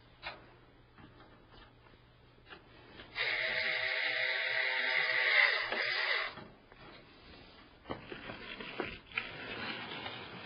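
A screwdriver, most likely a powered one, drives a screw into a PC case's drive bay to fasten a CD-ROM drive. It gives a steady whine for about three seconds, starting about three seconds in, with light clicks and knocks of handling metal parts around it.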